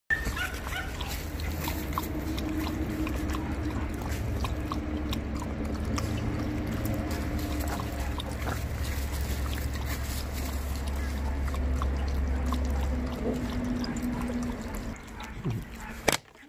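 Two Shetland sheepdogs lapping water from a plastic bowl: a rapid, irregular run of small wet clicks and splashes from their tongues. A low steady rumble lies underneath and stops about thirteen seconds in.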